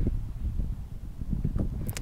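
Wind buffeting the microphone: a low rumble that rises and falls unevenly.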